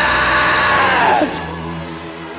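A man's long, loud shout into a microphone, falling in pitch for over a second, over steady background music.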